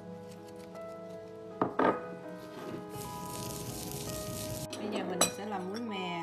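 Clinks of a metal spoon and a plate against a ceramic bowl and a stone mortar as toasted sesame seeds are handled: two close clinks about a second and a half in and one more near the end, with a hissing rustle in between, over background music.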